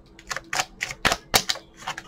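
A deck of cards being shuffled by hand: a quick, irregular run of about seven sharp card slaps and flicks.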